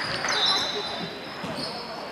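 Basketball shoes squeaking on a hardwood court as players run, several high squeals overlapping, in a reverberant sports hall with indistinct voices.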